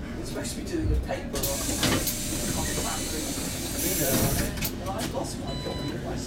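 Hiss of compressed air from a stationary MAN Lion's City CNG city bus, starting about a second and a half in, with a louder burst of air around four seconds in. Voices talk underneath.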